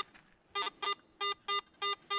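Garrett AT Pro metal detector giving a run of five short, identical target beeps, about three a second, as its coil sweeps back and forth over a buried coin. The beeps start about half a second in.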